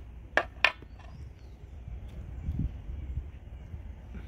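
Two sharp hammer blows, about a quarter second apart, on a steel stamping punch held against a cast lead ingot, driving a character into the soft metal.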